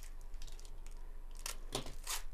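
Soft crinkling of a foil trading-card pack wrapper handled in gloved hands, with a couple of short rustles near the end.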